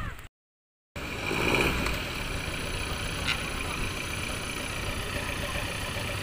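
A motor vehicle running steadily, a continuous engine and road rumble. It starts after a half-second gap of silence just after the start and swells slightly about a second later.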